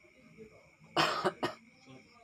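A person coughing: one harsh cough about a second in, followed quickly by a second, shorter one.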